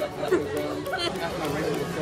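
Chatter of several people talking at once, with no single clear voice in front.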